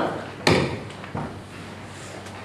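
A sharp knock about half a second in and a softer knock a little after one second, against the low noise of a large room full of people, as a congregation readies hymnals.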